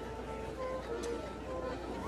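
Fairly quiet background music, a melody of short held notes, under the chatter of a seated crowd.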